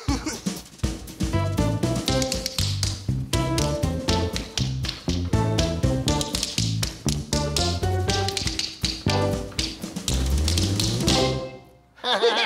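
Tap shoes clicking in quick rhythmic steps of a tap dance, over an upbeat music accompaniment with a bass line. Near the end the music climbs in a rising bass run and stops.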